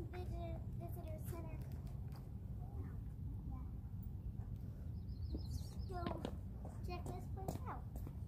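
A child's voice talking indistinctly in short bursts over a steady low rumble.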